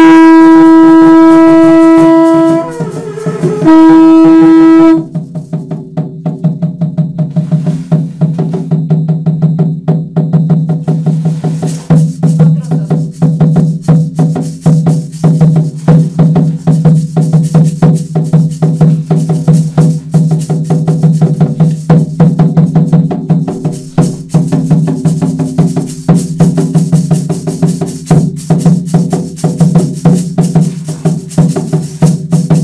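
Two long blasts on a blown horn, each held on one steady note, the first about two and a half seconds and the second shorter. They give way to a rapid, steady drumbeat with rattles that continues to the end.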